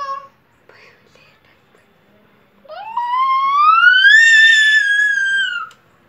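A small child's long, high-pitched squeal, its pitch climbing steadily for about two seconds and then dipping slightly before it stops, beginning about halfway through; a shorter voiced sound ends just at the start.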